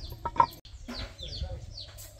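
A hen clucking, with one sharp, loud cluck about half a second in, over a small bird's repeated short falling chirps.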